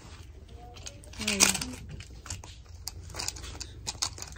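Scattered small clicks and rattles of a plastic baby toy being handled; its battery is dead, so it plays no sound of its own. A woman says a short "hi" about a second in.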